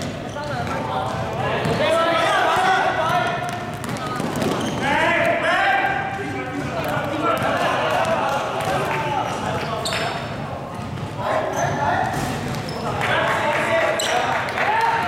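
Players and spectators shouting and calling out during a basketball game, with a basketball bouncing on the hard court floor, in a large indoor sports hall.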